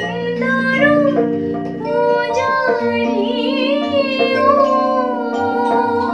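Woman singing an Assamese song with a wavering vibrato, accompanied by sustained chords on an electronic keyboard.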